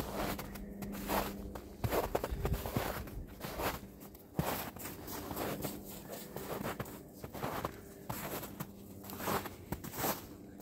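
Footsteps in snow, irregular steps about one or two a second.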